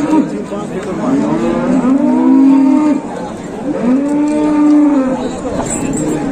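Cattle mooing: about three long calls, each rising and then falling in pitch over roughly a second.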